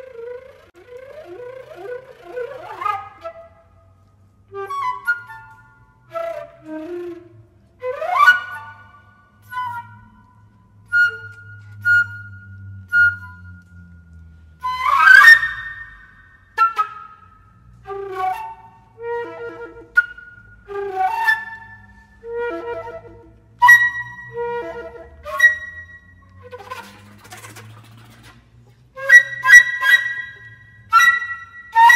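Concert flute playing a contemporary piece in short, detached phrases separated by pauses, with several loud, sharply attacked notes.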